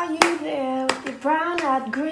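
A woman singing unaccompanied, long held notes sliding in pitch, while keeping a slow beat with a few sharp hand claps.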